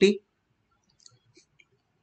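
The last syllable of a spoken word at the very start, then a few faint, small clicks about a second in.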